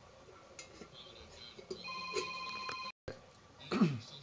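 Stainless steel bowl ringing with a clear metallic tone of several fixed pitches for about a second after a light knock, cut off suddenly; soft metal handling clinks before it.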